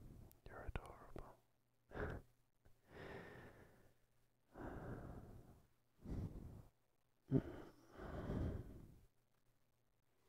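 A man's close-miked breaths, sighs and soft wordless murmurs, about seven slow swells with quiet gaps between them, punctuated by a few sharp mouth clicks.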